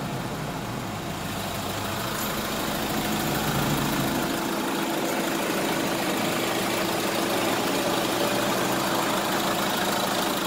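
Iveco Daily van's four-cylinder turbodiesel idling steadily, heard close to the open engine bay.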